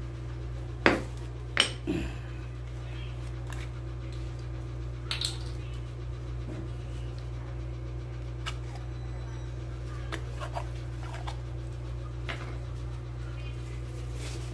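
Sharp clicks and clinks of a plastic oil bottle against the metal fork tube as fork oil is poured into a motorcycle's front fork. The two loudest come about a second in, with a few fainter ticks later. A steady low hum runs underneath.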